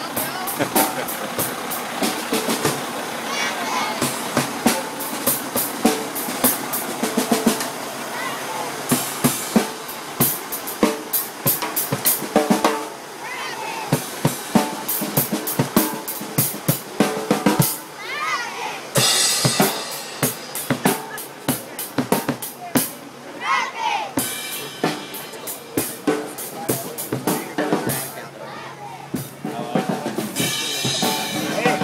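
Drum kit played live on a moving parade float: rapid snare, bass drum and cymbal hits, with a group of voices chanting and shouting over the drumming.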